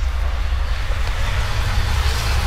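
Loud outdoor street noise: a steady low rumble with a broad hiss that swells around the middle.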